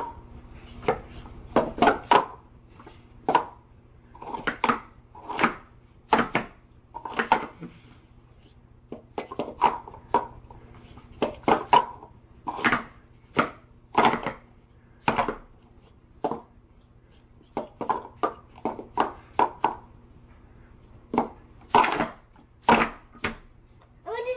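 Plastic sport-stacking cups clacking against each other and a StackMat as they are quickly stacked into pyramids and collapsed again: a rapid, irregular run of sharp clacks with brief pauses.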